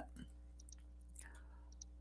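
Near silence in a pause in speech, with a few faint, short clicks.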